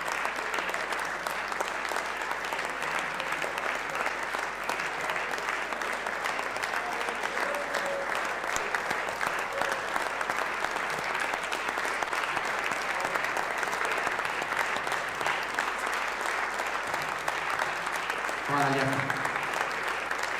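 Audience applauding steadily, with a man's voice heard briefly near the end.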